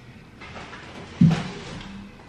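A boxed candle being handled and set onto a wooden shelf: a rustling slide, then a single dull thump just past halfway that dies away quickly.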